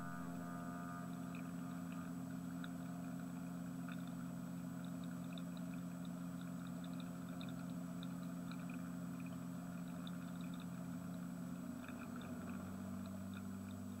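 Beechcraft G36TN Bonanza's six-cylinder piston engine running steadily at low power while lining up for takeoff, a faint, low, even drone. Its pitch shifts slightly near the end.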